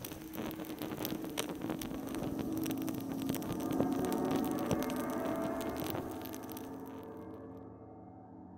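Animated-logo sound effect: fire crackling over a held, low ringing tone, louder through the middle, then both fading away in the last two seconds.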